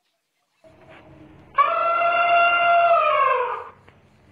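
An elephant trumpeting once: a loud, brassy call of about two seconds that holds one pitch and then slides down as it fades, after a few faint sounds in the first second and a half.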